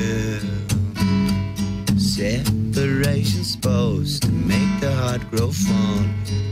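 A live song on acoustic guitar, strummed in a steady rhythm, with a man singing lines over it.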